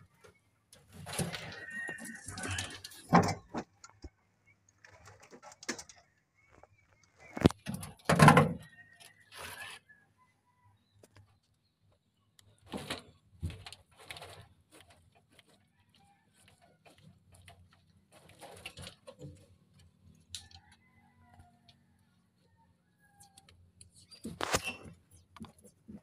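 Rustling and knocking as a bundle of insulated wires is handled and pulled through under a vehicle's steering column, in irregular short bursts with the loudest knocks about three and eight seconds in. Brief bird calls sound in the background.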